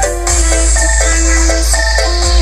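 Loud electronic dance music played through a large outdoor sound-check rig with many subwoofers: a plucky, marimba-like synth melody over a steady, heavy sub-bass.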